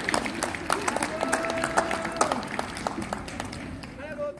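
Audience applauding, the clapping thinning out and growing quieter toward the end. A voice holds a brief call for about a second, starting about a second in.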